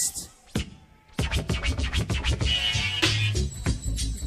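A DJ scratching a record on turntables over a hip hop beat, coming in about a second in with rapid back-and-forth strokes.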